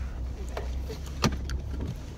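Steady low rumble of a car heard from inside the cabin, with a few light clicks and one sharp knock about a second in as something is handled next to the camera.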